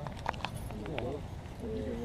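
Men talking quietly in the background, broken by several short, sharp clicks or taps.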